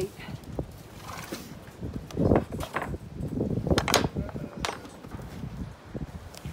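Horses and ponies moving about a straw-bedded pen, with hoof clops and irregular knocks, several sharp ones between about two and five seconds in.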